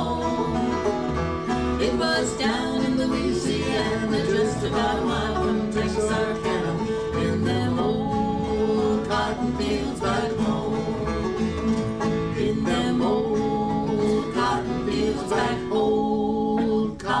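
Live acoustic country-folk band playing an instrumental break between sung verses: strummed acoustic guitars with quick picked string notes on top.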